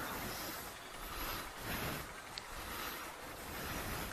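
A steady, fairly quiet rushing noise with no distinct events, like outdoor street background and wind on the microphone.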